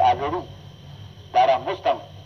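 A person's voice speaking two short phrases with a pause between them, heard with a narrow, radio-like tone.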